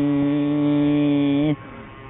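Small Japanese motor scooter engine passing, a steady high buzzing drone that stops suddenly about one and a half seconds in.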